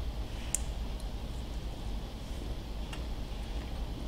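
A few faint, sharp clicks over a low steady room hum: a person biting and chewing a crispy air-fried steak fry.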